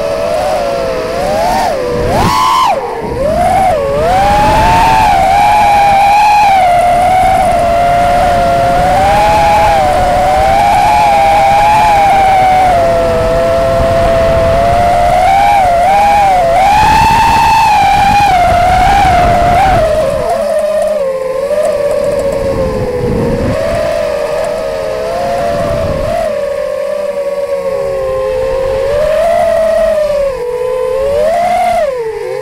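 FPV quadcopter's brushless motors and propellers whining in flight, picked up by the onboard camera, the pitch sliding up and down with the throttle. Quick swoops in pitch come a couple of seconds in, and after about twenty seconds the whine sits lower and wavers more.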